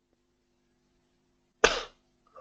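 A single short cough from the presenter near the end, over a faint steady hum.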